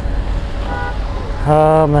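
Steady low rumble of outdoor background noise. A brief faint tone sounds just under a second in. Near the end a man's voice holds a drawn-out hesitating 'ma…' at one pitch.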